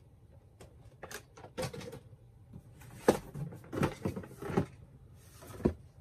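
Handling noises from boxed retail packaging: a scattered series of short knocks and rustles as the boxes are put down and picked up.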